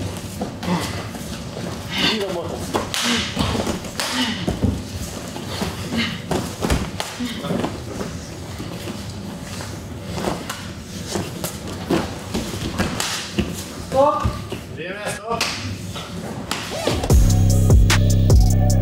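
Blows and footwork in an MMA cage fight: repeated dull thuds of gloved strikes and bare feet on the mat, with voices calling out around the cage. Music with a heavy drum beat starts about a second before the end.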